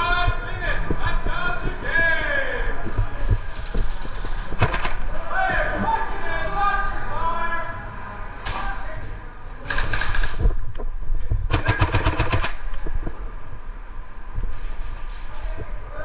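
Airsoft guns firing several quick bursts of rapid shots, the longest about a second long about three-quarters of the way through.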